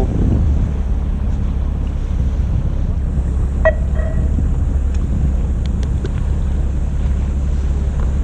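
Steady low rumble of a fishing boat's engine, with wind buffeting the microphone.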